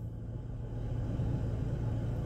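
Low steady rumble of a car heard from inside the cabin, growing slightly louder.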